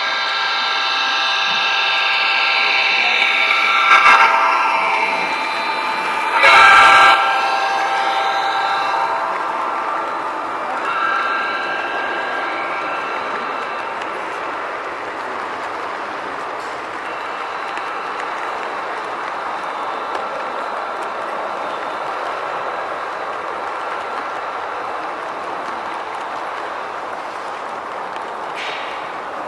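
Sound-equipped HO-scale SD70MAC model diesel locomotives sounding a multi-chime horn several times as they approach, louder about four and seven seconds in. After that comes a steady running sound as the train of passenger and dome cars rolls past.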